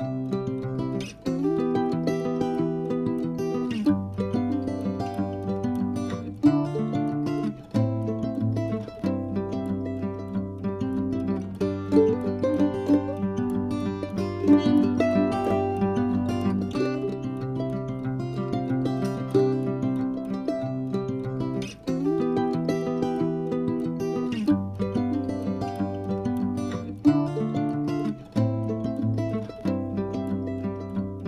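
Instrumental background music with plucked strings and a bass line.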